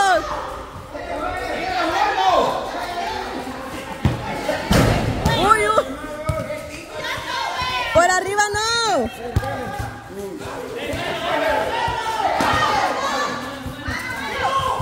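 Football kicked and bouncing on a concrete floor, with one loud thud about five seconds in, among players' short shouts and yelps.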